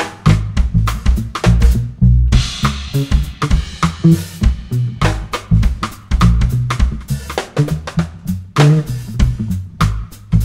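Instrumental funk groove with no vocals: a drum kit playing a busy beat of kick, snare and rimshots over a bass line, with a cymbal wash about two seconds in.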